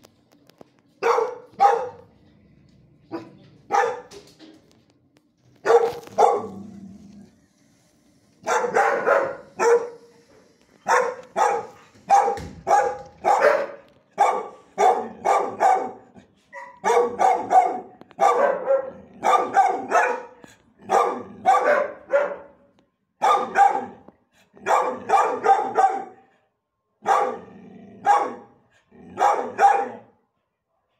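Dog barking: a few single barks at first, then from about a third of the way in a long run of quick barks in short clusters.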